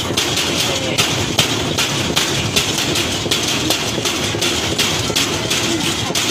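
A large wok being stirred hard with a long wooden paddle: sharp knocks and scrapes about two or three times a second over the steady roar of the burner underneath.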